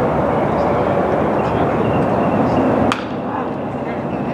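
Ballpark ambience with faint voices in the background, and a single sharp crack about three seconds in as the batter swings at a pitch.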